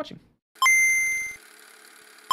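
A bright bell-like ding sound effect, struck once about half a second in and ringing for under a second before dying away to a faint hiss.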